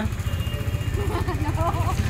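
KTM Duke motorcycle engine idling steadily close by, a low even pulsing rumble.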